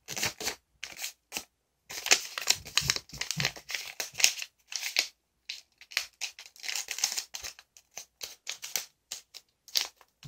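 A sheet of origami paper being folded and creased by hand, making irregular crinkling and rustling, with short pauses about one and a half seconds in and again about five and a half seconds in.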